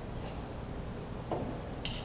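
Bar tools being handled, a jigger and a glass liquor bottle over a mixing tin, with a low steady hum underneath: a dull knock a little past halfway and a short sharp click near the end.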